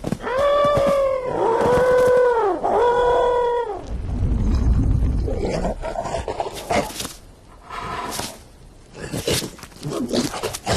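Cartoon elephants trumpeting three times in a row, each call a held note of about a second that rises and falls. About four seconds in, a heavy low thud and rumble follows as the elephants crash to the ground in a pile, then a few short knocks.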